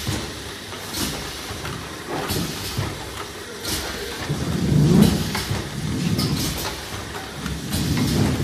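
Glass bottles clinking and rattling against each other and the guide rails as they ride a rotating stainless-steel bottle turntable, over a low machine rumble. Scattered sharp clinks throughout, with the rumble swelling loudest about five seconds in.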